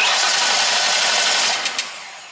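Starter motor cranking the Cobra's V8 steadily without it firing, then stopping about a second and a half in and winding down. It turns over but won't start because no spark is reaching the plug.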